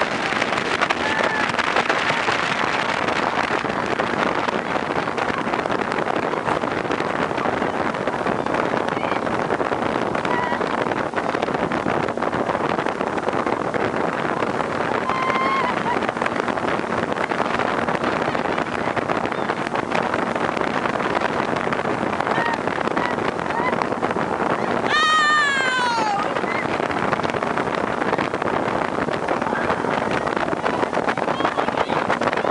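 Tige RZR tow boat running steadily at skiing speed, its engine mixed with wind on the microphone and the rush of water. About 25 seconds in, a short, high, falling whoop.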